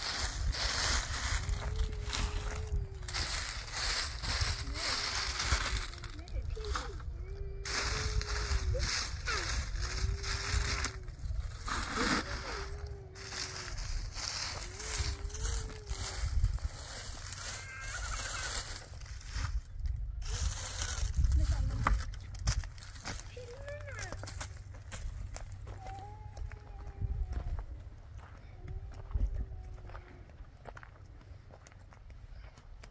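A person's voice repeating a short, arched, sung-like phrase again and again, about every second or two, with no clear words. A steady low wind rumble runs on the microphone underneath.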